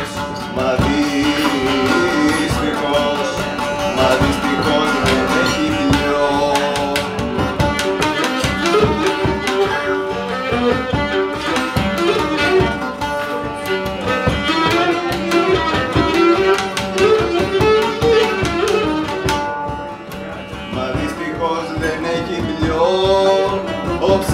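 Cretan lyra, laouto and a double-headed drum playing a syrtos dance tune: a bowed melody over strummed lute and steady drum strokes, with the lyra player singing in places.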